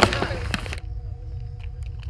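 A sharp knock right at the start. A hiss follows and cuts off abruptly under a second in, leaving a low rumble and a faint steady hum.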